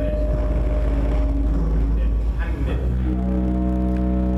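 A man's voice chanting in Arabic, settling into a long held note about three seconds in, over a steady low hum.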